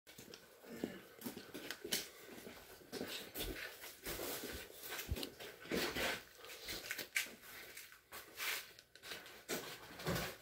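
Faint, irregular scuffs, rustles and clicks: footsteps on a gritty concrete floor and the phone being handled as it moves.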